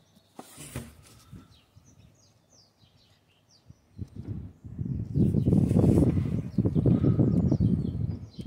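Faint bird chirps, a few short high glides, over a quiet background. From about four seconds in they give way to a loud, rough low rumble with crackle.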